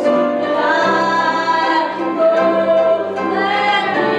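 Voices singing a gospel hymn with piano and electric bass guitar accompaniment, in long held notes over a steady bass line.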